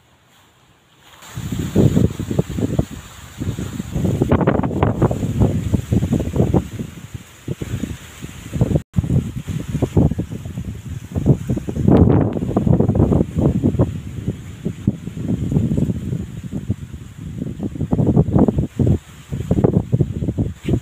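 Wind buffeting a phone's microphone: a loud, gusty low rumble that starts about a second in and keeps rising and falling in irregular gusts.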